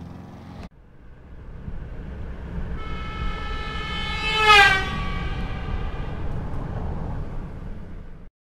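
Logo-intro sound effect: a low rumble swells, and a horn-like chord sounds and drops in pitch as it sweeps past about four and a half seconds in, like a passing train horn, before the rumble fades away.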